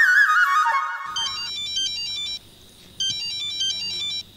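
A wavering, falling tone, then a mobile phone's electronic ringtone: a fast stepped beeping melody that rings twice, each ring a little over a second long with a short gap between them.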